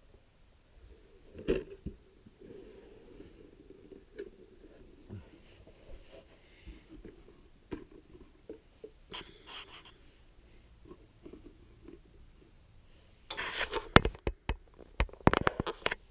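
Hollow plastic Origins Castle Grayskull toy playset being handled and turned around on a fabric-covered surface: scattered knocks and scrapes, a sharper knock about a second and a half in, and a louder run of knocks and rustling near the end.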